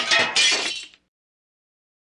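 Breaking-glass sound effect: a crash of shattering glass, with a second crash about a third of a second in, dying away by about a second.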